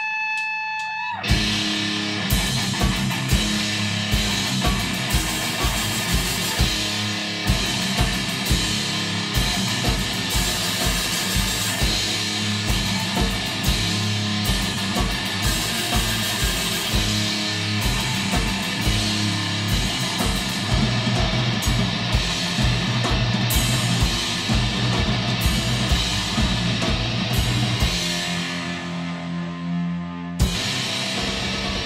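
Live heavy rock played on distorted electric guitar and drum kit. A held guitar note rings alone at first, then about a second in the drums and guitar crash in together and drive on with fast, steady kick drum under the guitar.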